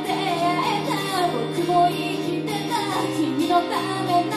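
A woman singing with her own acoustic guitar strummed underneath, a live solo acoustic performance.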